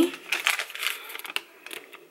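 Thin paper receipt rustling and crinkling as it is unfolded and handled: a quick run of soft crackles that thins out near the end.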